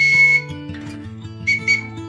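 Toy whistle blown in three short toots: one about half a second long at the start, then two quick ones about a second and a half in, each a single high steady note. A song with guitar plays underneath.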